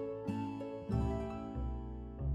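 Gentle background music of plucked-string notes over a bass line, a new note every half second or so.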